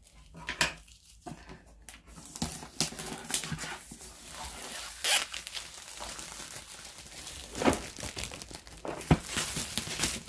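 Cellophane shrink-wrap being torn and crinkled off a cardboard jigsaw puzzle box: a dense, irregular run of plastic crackling and ripping that starts about a second in, with a few sharper snaps.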